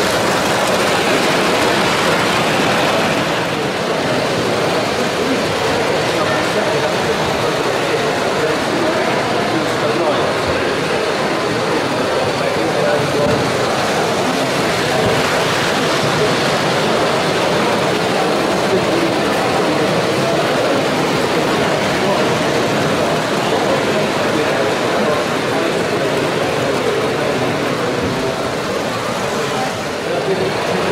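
Steady indistinct chatter of many voices in a busy hall, with a Hornby Dublo model train running on metal track, louder for the first few seconds as it passes close.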